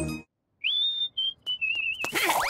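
Whistling: a single high note glides up and holds about half a second in, then two short notes follow and a wavering, warbling note near the end.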